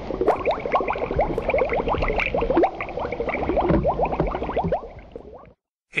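Bubbling water sound effect for a sinking boat: a dense run of quick rising blips that fades away and stops about five and a half seconds in.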